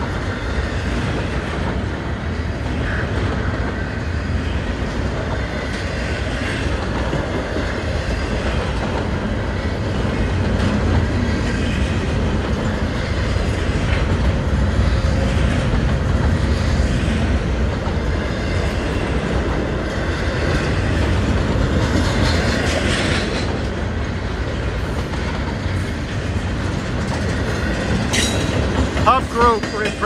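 Double-stack intermodal freight train's container-laden well cars rolling past at close range, a steady low rumble and rattle of car bodies and steel wheels on the rails.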